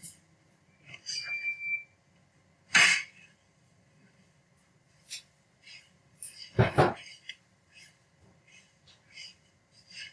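Handling sounds at a heat press: scattered light clicks and rustles, a short sharp rustle about three seconds in, and a louder thud about two-thirds of the way through.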